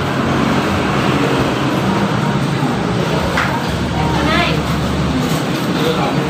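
Steady background noise like passing road traffic, with a low engine rumble through the middle and brief distant voices.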